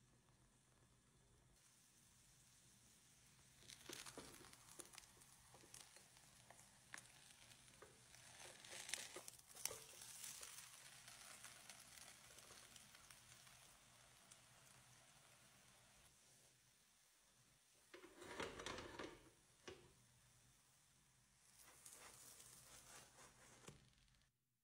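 Faint frying sizzle from a potato-and-egg omelette in a non-stick pan, with scattered clicks and scrapes of a silicone spatula against the food and pan. A louder scraping rustle comes about three-quarters of the way through.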